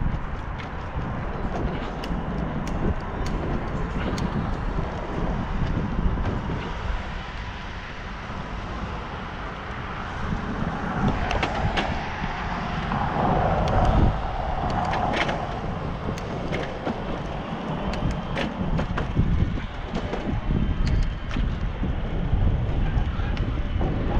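Wind buffeting the microphone of a camera worn while cycling, with road rumble and scattered sharp clicks and knocks. The noise swells louder for a few seconds about halfway through.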